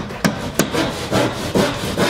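Small plasterboard hand saw cutting through a gypsum plasterboard (Gyprock) sheet along a stud to open a doorway, in quick rasping back-and-forth strokes, about three a second.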